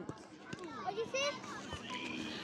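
Faint, distant children's voices calling out during play, with a few light knocks.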